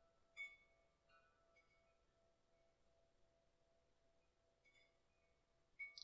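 Near silence, with about five faint, short ringing metallic clinks scattered through it.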